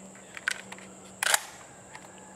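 Two sharp metallic clicks about three-quarters of a second apart, the second louder: the action of a Stoeger M3500 semi-automatic shotgun being handled as it is readied to fire.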